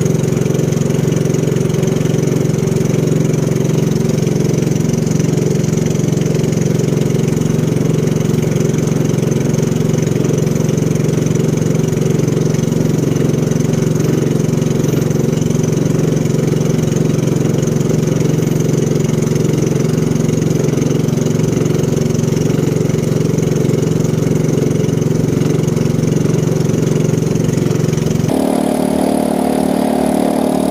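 Motorized outrigger boat's engine running steadily underway, a loud even drone. The pitch pattern shifts abruptly near the end.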